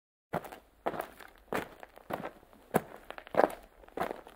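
Footsteps of a person walking at a steady, brisk pace on a concrete sidewalk in sneakers, about seven evenly spaced steps starting a third of a second in.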